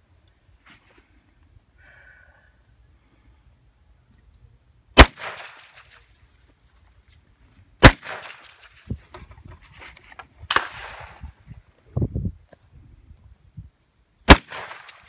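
Rifle shots fired at distant steel targets: two loud, sharp reports about three seconds apart, the first about five seconds in, each followed by a rolling echo across open ground. A weaker crack with its own echo comes near the end, among scattered low thumps.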